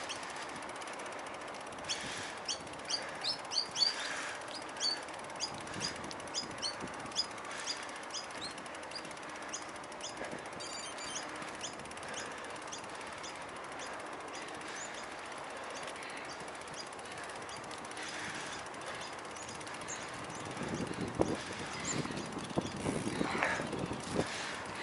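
Birds chirping in quick series of short, high notes over the steady hiss of bicycle tyres and wind while riding a muddy path. Near the end come a few seconds of rougher rattling and crunching from the bike on the uneven ground.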